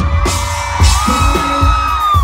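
Live country band music with drum hits under a long held high note, and whoops from the crowd.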